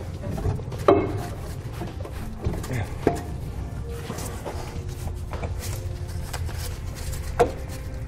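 Knocks and clunks as a car's exhaust pipe is pushed back onto its rubber hangers: a sharp knock about a second in, another around three seconds and one near the end, over a steady low hum.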